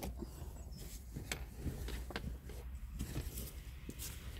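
Faint rustling and scattered small clicks of clothing and handling as a small dog is shifted on a person's lap, over a low steady rumble.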